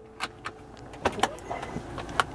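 A few light clicks and knocks, about a quarter second in and again around a second in, from the car's interior fittings being handled, such as the ashtray lid or the centre console.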